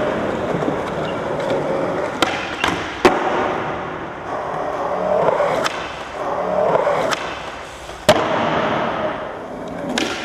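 Skateboard rolling on hard ground, the wheels running with a steady rumble, broken by several sharp clacks of the board popping and landing. The loudest clacks come about three seconds in and about eight seconds in.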